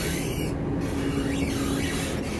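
Steady interior noise of a Class 170 Turbostar diesel multiple unit, heard in the gangway vestibule: an even hiss over a steady low hum.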